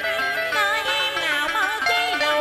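A woman singing a tân cổ (Vietnamese cải lương-style) melody with vibrato over a plucked-string accompaniment.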